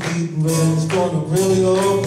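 A harmonica playing held, slightly bending notes over a strummed acoustic guitar: an instrumental break in a live blues-country song.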